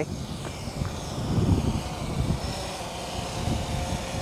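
Blade 350 QX quadcopter's electric motors and propellers whirring steadily over an uneven low rumble.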